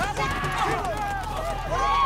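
Panicked villagers screaming and crying out, several high-pitched voices overlapping and wailing with no clear words.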